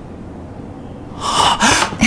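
Two quick, audible gasping breaths from a person, starting about a second in.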